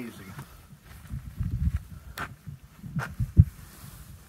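Footsteps on sandstone and gravel: uneven low thuds with a couple of sharp clicks, about two and three seconds in.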